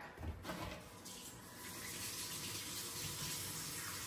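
Kitchen tap running into a sink as hands are washed: a steady rush of water that starts about half a second in.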